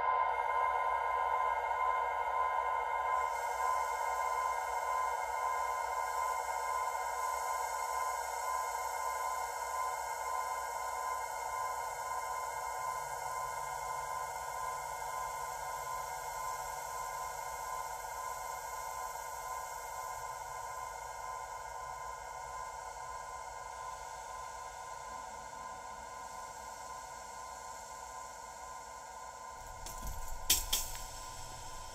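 A held, droning reverb wash from the Airwindows Galactic2 reverb plugin: a steady cloud of many sustained tones that brightens a few seconds in and then slowly fades away.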